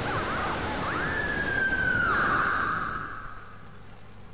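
Pressure cooker whistling as steam forces past the weight valve on its lid. One long whistle starts about a second in, rises sharply, then slides slowly down in pitch and breaks into a rush of hissing steam that fades away.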